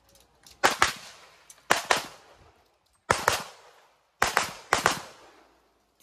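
Pistol shots fired in quick pairs, about four pairs roughly a second apart, each crack trailing off in a short echo.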